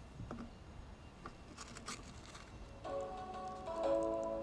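Faint rustling and clicks of small plastic cups of salt being handled, then background music with steady held notes comes in about three quarters of the way through.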